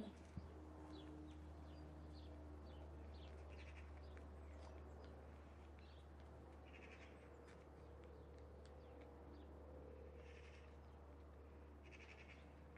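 Near silence: a steady low hum with occasional faint, short bird chirps.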